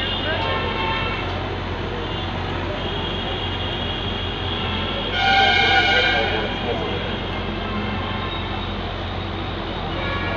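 Steady rumble of road traffic and heavy machinery, with a vehicle horn honking for about a second a little past the middle.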